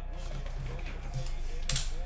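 Faint voice of a football game's TV commentary over a low steady hum, with one short click near the end.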